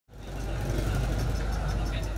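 Busy street ambience: a steady low hum of traffic with the chatter of a passing crowd, fading in at the start.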